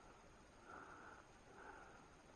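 Near silence, with faint soft breaths close to the microphone about once a second.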